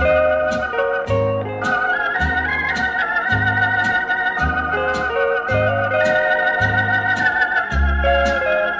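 Instrumental break of a 1953 country ballad record: organ and steel guitar carry a slow melody of held, wavering notes over a bass line that changes about once a second, with a light steady beat and no singing.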